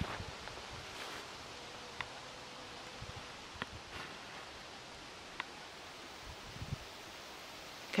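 Quiet, steady outdoor background hiss with a few faint, isolated ticks.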